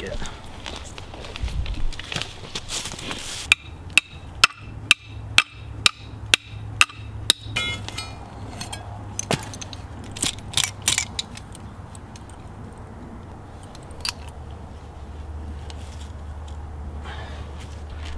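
A hammer pounding a dog-proof raccoon trap into the ground: a run of about nine sharp strikes, roughly two a second, a few seconds in, followed by a few scattered knocks.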